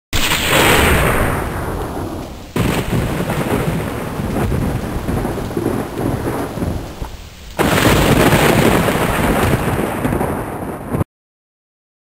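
Thunder during a night storm, in three spliced pieces. It starts with a sudden loud peal that fades over about two seconds, then a rolling rumble, then another sudden loud peal about two-thirds of the way through that rumbles on and cuts off abruptly near the end.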